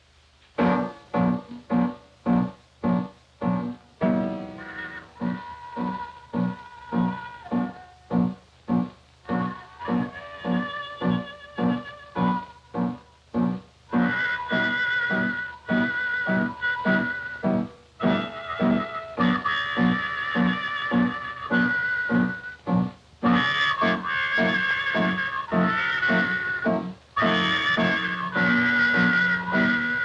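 Upright piano playing steady chords about twice a second, joined a few seconds in by a trumpet playing a slow melody with a wavering vibrato on its long held notes.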